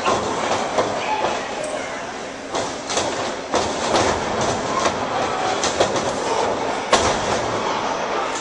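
Crowd noise with a series of sharp thuds from wrestlers' bodies hitting the wrestling ring's canvas and boards, the loudest near the end.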